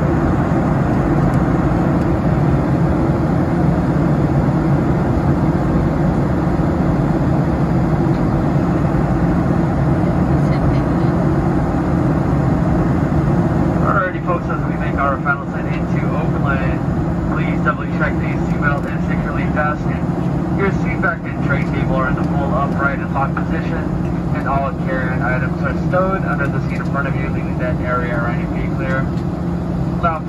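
Steady cabin drone of a Boeing 737-700 in flight, the low rumble of its CFM56-7B engines and rushing airflow, heard from a window seat beside the wing. From about halfway through, a spoken cabin announcement over the speakers plays on top of it.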